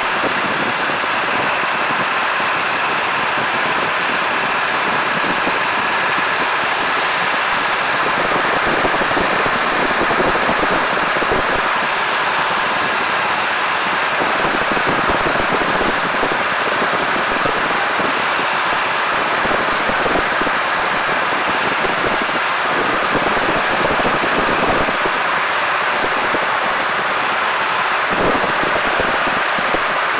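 Biplane in flight: a loud, steady rush of slipstream wind mixed with engine noise, heard during a high-speed dive and pull-up.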